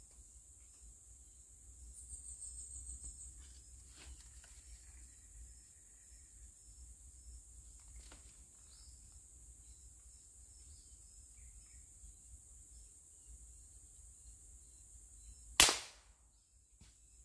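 A single sharp shot from a scoped air rifle, fired at a squirrel, about a second before the end. It is far the loudest sound here. Before it there is only a faint, steady, high insect hiss of the forest and a few soft clicks.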